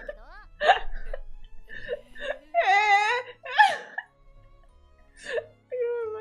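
Anime dialogue with high, sliding voices over background music, mixed with a woman's laughter.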